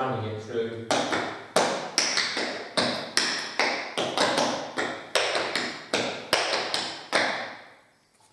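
Metal taps on tap shoes striking a tiled floor in a quick rhythmic run of drops and shuffle ball changes. The sharp strikes, each with a short ringing decay, come at about three a second from about a second in and stop just after seven seconds.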